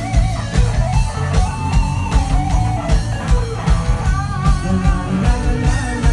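Live rock band playing loudly: electric guitars over bass and a steady drum beat.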